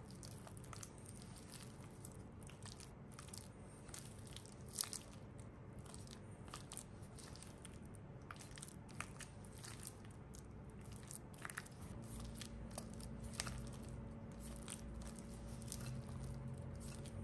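Silicone spatula mixing softened butter and egg yolk in a glass bowl: soft wet squishing with frequent irregular clicks and taps of the spatula against the glass. A low steady hum underneath grows louder about three quarters of the way through.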